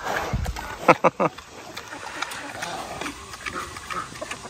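Pig grunting and snuffling right at the microphone as it eats grain from a bowl, with a low grunt in the first half-second and a few short, sharp snorts about a second in.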